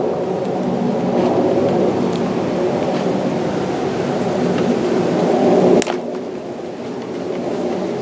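Black tape being pulled off its roll and wound tightly around a cable end in a steady rasp that slowly grows louder, then a sharp snap about six seconds in, after which it goes quieter.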